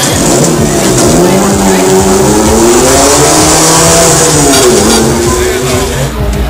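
A loud, engine-like whine that glides down in pitch, climbs for a few seconds and falls again, like a revving motor. It comes with the Frisbee XXL pendulum ride in full swing, over a steady pounding music beat.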